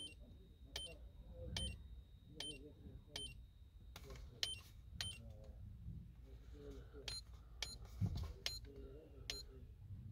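Buttons on a handheld TDB1000 key programmer being pressed one after another, each press giving a short click-beep, about a dozen presses at uneven intervals as the menu is scrolled.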